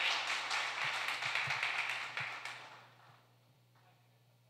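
A congregation applauding, the clapping fading and stopping a little under three seconds in.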